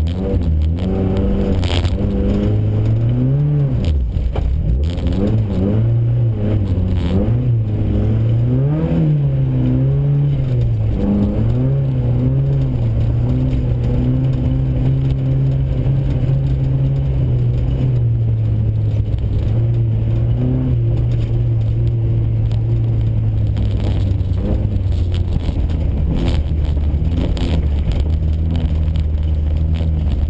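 VW Golf GTI rally car's engine heard from inside the cabin, revving up and down through the first dozen seconds or so, then held at a steady pitch. A few brief knocks sound along the way.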